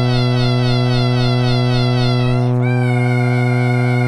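Granular synthesizer holding one note: a steady low sawtooth drone under a granulated kitten-meow sample whose high tones waver up and down in pitch. About two and a half seconds in, the wavering texture changes to a steadier high tone as the sample's play position shifts.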